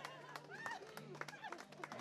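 Faint background voices of an onlooking crowd, with a steady low hum that drops out briefly about a second in and a few light clicks.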